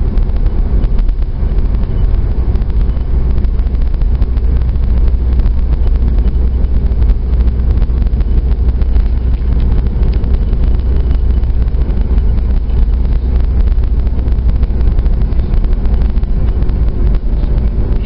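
Steady, loud deep rumble of a moving car heard from inside the cabin: engine and tyre road noise with some wind, unchanging throughout.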